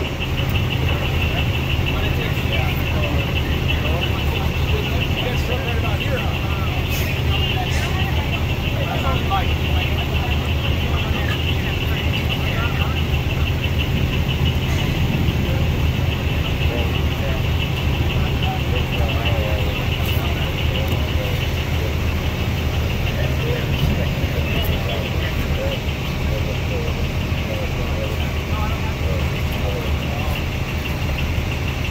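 Emergency vehicle engines idling steadily, a low hum with a constant high-pitched whine above it, while indistinct voices of responders talk in the background.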